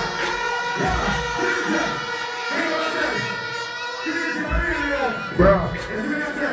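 Live show sound from a stage PA: music with steady sustained tones, shouted voices, and crowd noise.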